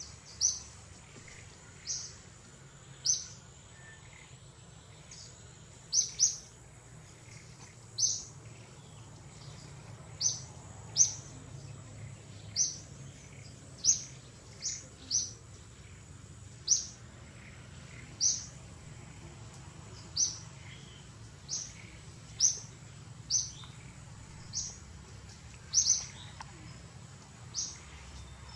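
A bird chirping over and over: short, sharp high-pitched chirps, about one a second at uneven spacing, with a faint steady high whine behind them.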